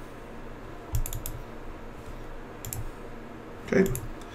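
Computer keyboard keys being pressed: a quick cluster of key clicks about a second in and a couple more near three seconds.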